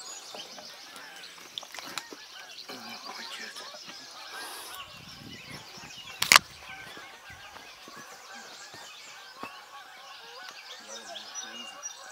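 Birds calling, a steady outdoor chorus of chirps and calls, with one sharp loud knock about six seconds in.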